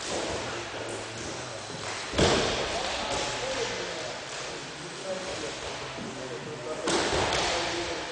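Wrestlers' bodies thudding on a wrestling mat in a large gym hall: two loud echoing thuds, one about two seconds in and another near the end, with indistinct voices in between.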